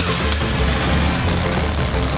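Cordless power drill running steadily, over background music.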